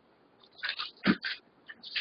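Paper handled at a desk: several short rustles, with a soft knock about a second in.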